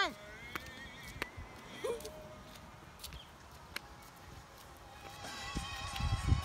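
A few scattered footsteps clicking on asphalt over a quiet outdoor background, with a brief vocal sound about two seconds in. Faint background music with held notes comes in near the end.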